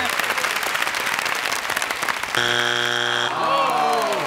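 Family Feud contestants clapping, then about two and a half seconds in the show's strike buzzer sounds once for just under a second: the answer is not on the board. Voices react right after it.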